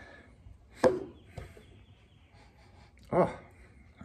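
Beer pouring from a can into a glass, trailing off in the first moments, then a single sharp knock about a second in.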